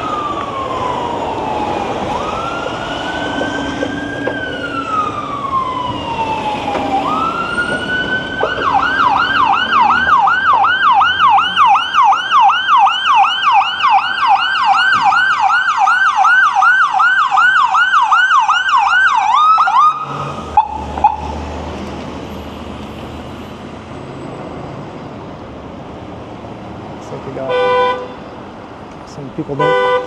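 Ambulance siren: a slow rising-and-falling wail for about eight seconds, then a fast yelp of about three cycles a second that cuts off suddenly about twenty seconds in, over street traffic.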